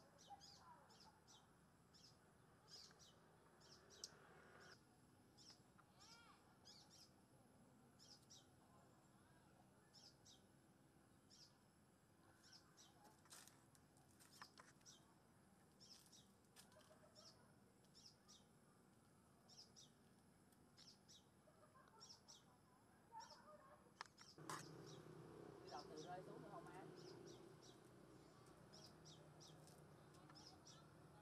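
Faint bird chirps: short, high calls repeated irregularly. About 24 seconds in, a faint low murmur, like distant voices, joins them.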